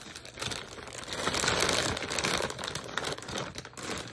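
Plastic packaging bags crinkling and rustling as they are handled and pulled open, loudest in the middle.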